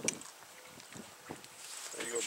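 Faint knocks and handling noises aboard a small boat, over low wind noise on the microphone.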